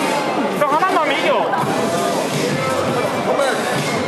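Hubbub of many overlapping voices from spectators and coaches in a large hall, with music playing underneath.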